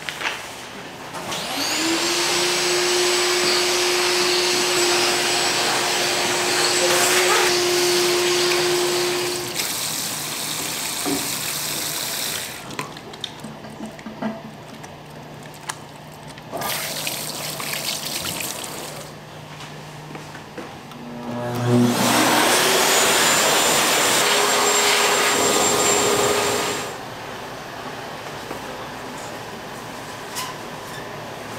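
A wall-mounted uniform vacuum spins up with a rising whine and runs for about eight seconds. Quieter tap water runs in the middle. A second electric motor then spins up the same way, runs for about five seconds and cuts off.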